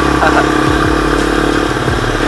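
Honda C70 motorcycle's single-cylinder four-stroke engine running steadily under way, heard from on the bike.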